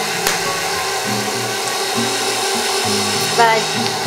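KitchenAid Professional 600 stand mixer running steadily, its paddle beating cream-cheese cheesecake batter in the stainless steel bowl. Background music plays underneath.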